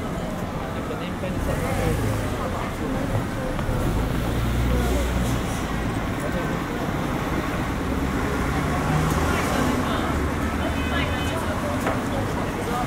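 City street traffic noise with a bus engine running close by, a low rumble strongest through the middle, under the voices of passers-by.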